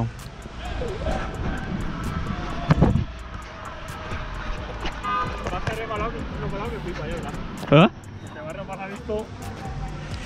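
Outdoor sound on a football pitch: a steady low rumble under faint distant voices, with scattered light taps as a football is touched with the foot. There is a loud short knock about three seconds in, and a brief spoken "huh? ah?" near the end.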